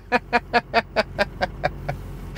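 A man laughing heartily, a quick run of short breathy 'ha' pulses about five a second, over the steady low hum of an idling truck engine.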